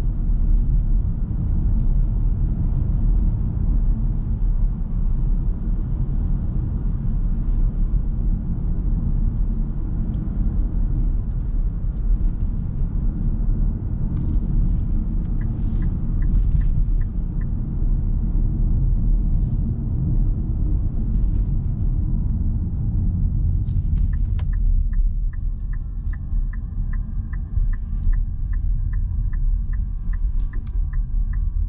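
Steady low road and tyre rumble inside the cabin of a Nissan Note e-POWER AUTECH Crossover 4WD driving at about 50 km/h. A turn-signal ticks evenly, about two or three times a second, for a couple of seconds midway, and again from about three-quarters in as the car slows and the rumble eases.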